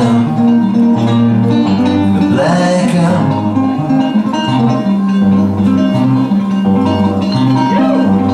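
Live band music: a guitar being played over sustained low notes, with short sung lines about two and a half seconds in and again near the end.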